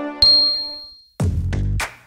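Sound effects of a logo sting: the intro music dies away, a single bright ding rings out and fades over about a second, then a short low sound effect follows for under a second.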